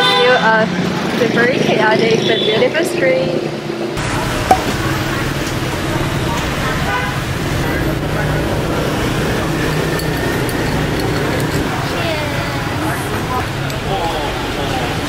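Busy street traffic with motorbikes running past, a steady low rumble with people talking over it. Voices are louder for the first few seconds, and there is a single sharp knock about four and a half seconds in.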